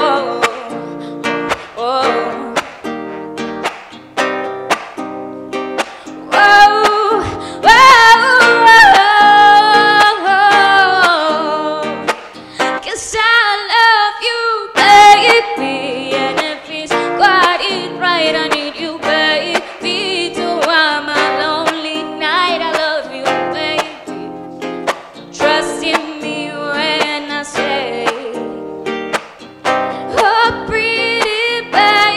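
A woman singing a song while strumming an acoustic guitar in a steady rhythm. She holds long notes in the middle, and about thirteen seconds in the guitar drops out for a moment before the strumming comes back.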